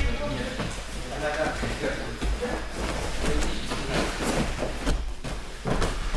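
Thumps of a martial-arts throw: a body landing on padded gym mats, with bare-foot footfalls and scattered background voices.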